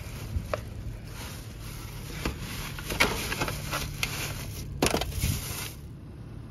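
Clear plastic lid and foil of a takeout pan crinkling and crackling as it is handled and opened, in irregular sharp crackles with a few louder snaps toward the end, over a low steady hum.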